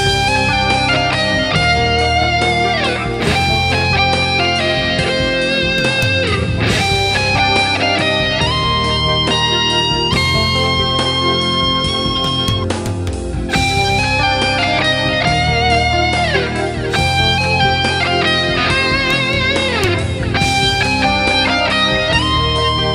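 Instrumental rock track: a distorted lead electric guitar (Vigier GV Wood through a Fractal Axe-FX II) plays a sustained melody with bends and downward slides, over drums, bass and keys. Big cymbal-and-drum accents come about every three and a half seconds.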